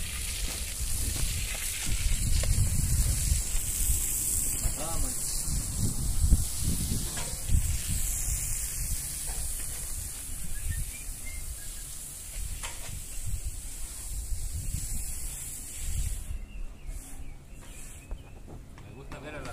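Water spraying from a hose onto brick and stone steps during wash-down: a steady hiss that stops about sixteen seconds in, with irregular low rumbles.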